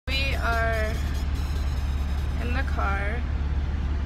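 Steady low rumble inside a car's cabin, with a woman's voice speaking briefly over it twice.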